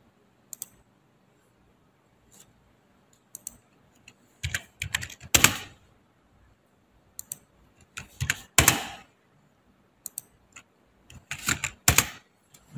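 Computer keyboard and mouse clicks: scattered short clicks, with louder runs of clicking about halfway through, again about two-thirds through and near the end.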